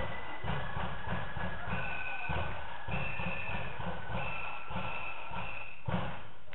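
Marching flute band playing: a high flute melody of held notes over a steady drum beat.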